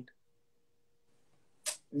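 Near silence between two men's speech, with a faint steady hum through the middle and a short breathy hiss near the end, just before talking starts again.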